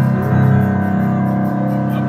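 Live music: a digital piano holding sustained chords, loud and steady, with a brief sliding note near the start.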